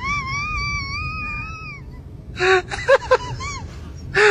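An inflated rubber balloon letting air out through its stretched, pinched neck, giving a steady, slightly wavering high squeal that stops abruptly a little under two seconds in. It is followed by a few short, louder bursts of voice.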